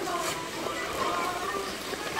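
Music playing at an outdoor ice rink, with a mix of skaters' voices and the hiss of skate blades gliding over the ice.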